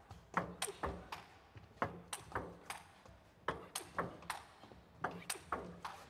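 Table tennis rally: the ball clicks sharply off the table and the rubber-faced bats in quick, uneven succession, two or three hits a second.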